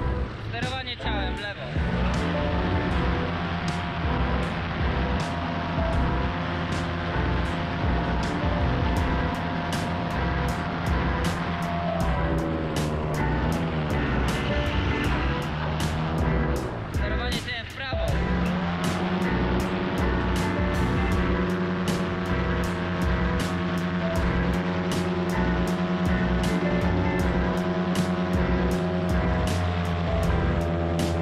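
A paramotor engine drones steadily in flight, mixed with background music that has a steady beat. The sound dips briefly a little past halfway.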